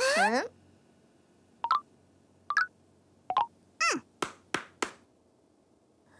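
Cartoon sound effects: a falling tone at the start, then three short high blips spaced under a second apart, another falling tone, and three sharp clicks in quick succession. Quiet in between.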